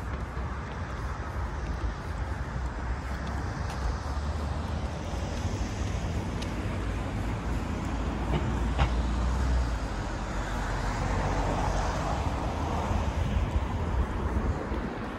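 Steady city street traffic: cars running along the road beside the pavement, a continuous hum of engines and tyres that swells briefly near the end as a vehicle passes.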